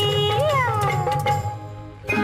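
Tamil film song: a woman's singing voice holds a high note, swoops up briefly and then slides down in pitch over a low accompaniment. The song fades out near the end.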